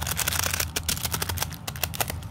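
Folded tissue-paper fan being spread open by hand, its pleats crinkling and crackling: a dense rustle in the first half-second, then a run of separate quick crackles.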